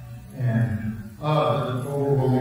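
A man singing long held notes over an acoustic guitar, with a new phrase starting about half a second in and another just past the one-second mark.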